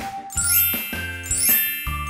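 A bright music jingle of chimes and tinkling over a low bass note, with a sparkling high run about once a second.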